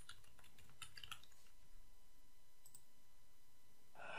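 Faint computer keyboard typing: a quick run of keystrokes in the first second and a half, then a couple of further isolated clicks.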